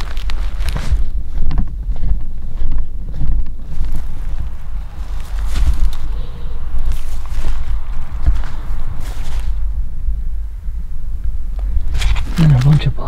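Footsteps crunching and rustling through dry corn stalks and grass, irregular and close, over a constant heavy low rumble on the microphone.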